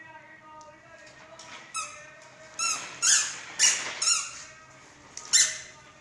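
A baby squealing several times in short, sharp, high-pitched cries with bending pitch, after a softer held vocal tone at first.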